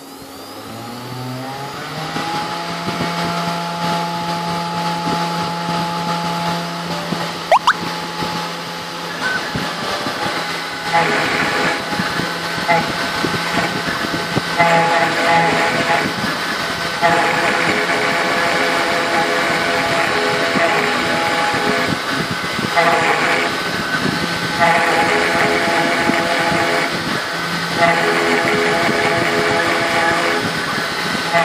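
A 3040T desktop CNC router's spindle spins up to its set 10,000 rpm with a rising whine over the first two seconds, then runs steadily. From about ten seconds in, a 90° engraving bit cuts aluminium: a harsher cutting noise comes and goes every few seconds over the steady whine as the bit traces the design.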